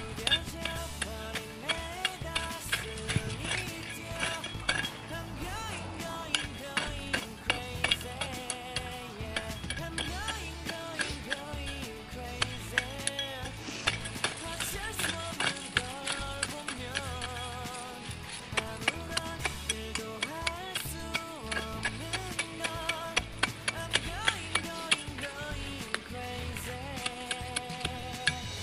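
Background pop music, a Korean pop song, playing steadily with a regular beat.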